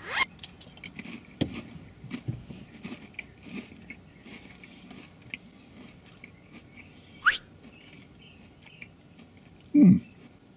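A Pringles potato crisp bitten and chewed, with many small crunches through the first few seconds that thin out as it is chewed down. A brief rising squeak comes about seven seconds in, and a short loud sound like a voice near the end.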